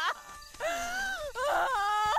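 A woman wailing in grief. After a brief dip near the start, a long, wavering cry rises and falls, with a short sob-like break in the middle.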